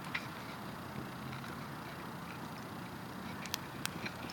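Quiet steady background hiss with a few faint sharp clicks scattered through it, two of them close together near the end.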